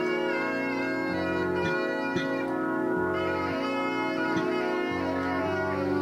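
Band music of held, reedy organ-like chords over a low note that comes and goes every second or two, with a few light taps and no drumbeat.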